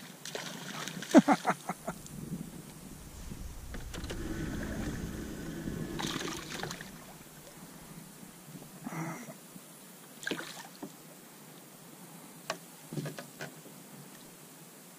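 A man laughs about a second in, then a small boat's hull gives a few seconds of low rumbling followed by scattered knocks and clatters as a hooked bass is brought alongside and lifted in by hand.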